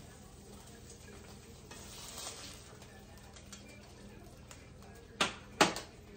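Onions and garlic sizzling faintly in a frying pan while a spatula scrapes and stirs them, then two sharp knocks of the utensil against the pan near the end.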